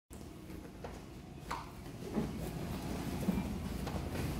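Two grapplers in cotton gis scuffling on a padded mat, with a few soft thumps and shuffles as one drops to his back, over a steady low room rumble.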